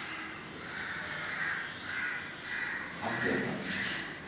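Crows cawing: a short run of harsh calls in quick succession.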